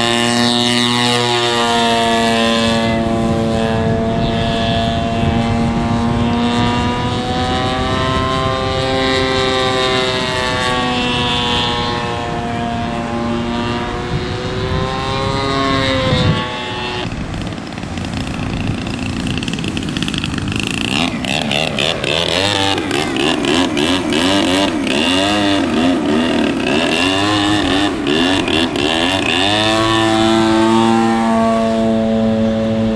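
Radio-controlled aerobatic model airplane's engine and propeller running at high revs, a loud continuous buzz whose pitch rises and falls as the plane throttles and manoeuvres, with a sudden break about halfway.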